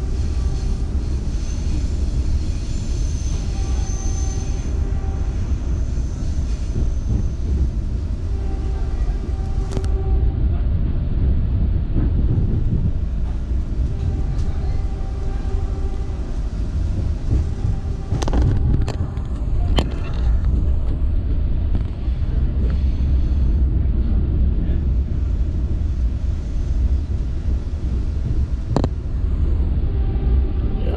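Running noise of the Vande Bharat Express heard from inside a coach: a steady low rumble of wheels on rail. A faint whine comes and goes in the first half, and a few sharp clicks come from the track a little past halfway and again near the end.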